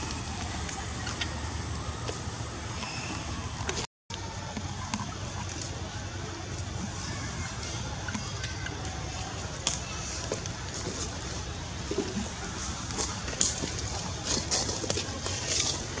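Steady outdoor background noise with a low rumble and scattered faint clicks, cut by a brief dropout about four seconds in.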